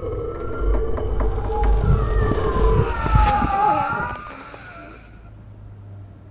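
Eerie film sound design: wailing tones gliding up and down over a deep low rumble. It swells through the first three seconds, then dies away to a faint hum after about four seconds.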